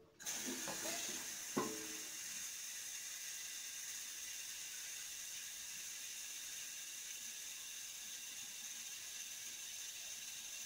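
Water running steadily from a kitchen tap off to one side, a soft even hiss, as a container is filled to boil; a few faint knocks come in the first two seconds.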